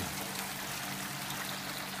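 Water running steadily through a Gold Cube recirculating concentrator and spilling into its discharge tub, over the steady hum of the electric pump that circulates the water.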